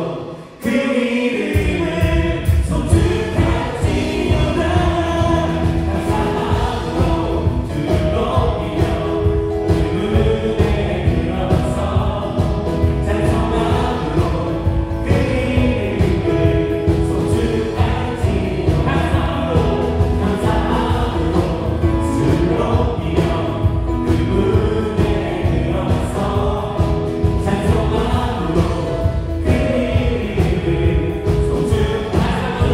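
Worship band playing a gospel song with voices singing: electric guitar, keyboards, bass guitar and drums. After a brief drop just after the start, the full band with drums and bass comes in about a second and a half in and plays on steadily.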